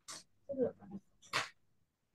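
Quiet, indistinct voice sounds: a short hiss, a brief murmur, then another hiss, too faint and clipped to make out as words.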